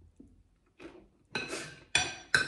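Metal spoon scraping and clinking against a ceramic plate: a few soft scrapes, then two ringing clinks in the second half, the last a sharp one near the end.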